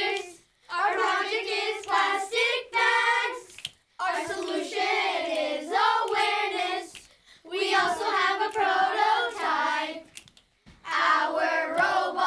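A group of children singing a team song together, in phrases of about three seconds with brief pauses between them.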